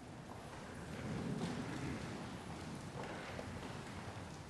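A congregation sitting down in wooden church pews: shuffling, rustling clothes and a few light knocks of wood. It swells about a second in, then thins out.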